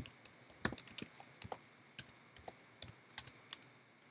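Typing on a computer keyboard: a string of light, unevenly spaced keystrokes as a terminal command is typed.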